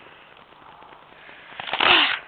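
Quiet background with faint ticks, then near the end a short, loud breathy sigh.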